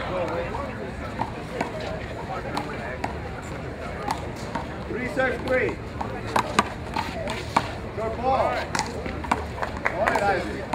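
Indistinct chatter of spectators' voices with scattered sharp smacks at irregular intervals, rubber handballs hitting the wall and pavement.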